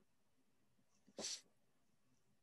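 Near silence, broken about a second in by one short breathy exhale from a person on the call.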